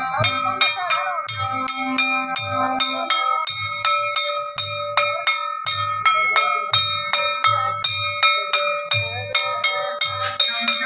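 Hand-held brass plates struck in a fast, even rhythm, about four to five strikes a second, each ringing with a bell-like tone, over a repeating pattern of low drum beats: Santal Dansai dance music.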